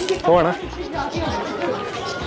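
People's voices chattering, with music playing underneath.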